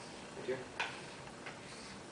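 A few light, sharp ticks of chalk tapping against a chalkboard.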